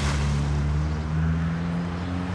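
Volkswagen Jetta sedan's engine running as the car drives away, a steady low hum that rises a little in pitch partway through.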